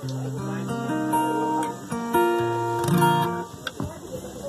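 Acoustic guitar playing a few ringing chords, each held briefly before the next, stopping about three and a half seconds in.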